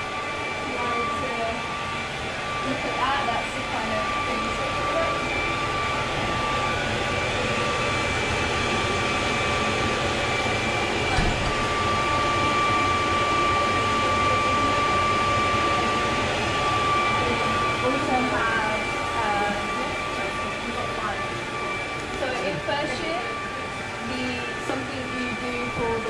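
Steady mechanical hum with two high, even whining tones from workshop machinery. Indistinct voices come and go over it, most near the end.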